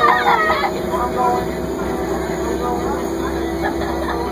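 Crown Supercoach bus heard from inside the cabin while it drives: a steady low engine rumble with a steady whine over it. Voices chatter in the first second or so.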